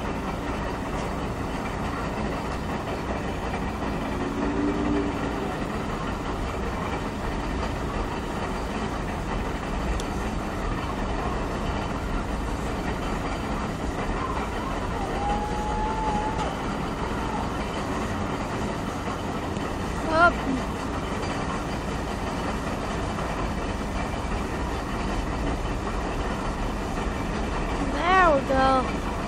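42-ton model B42 steam crane's boiler exhaust rushing steadily up its stack as it is worked hard to throw flame and sparks, a continuous even rush with a low rumble underneath.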